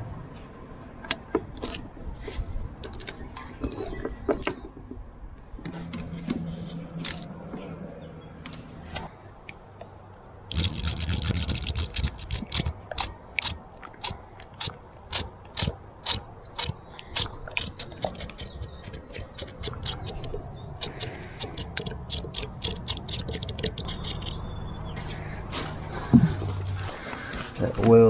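Metal clicks and scrapes as the drain plugs go back into a Kubota mini tractor's front axle. Then oil is poured from a plastic bottle through a funnel to top the front end up, heard as a run of regular clicks and gurgles.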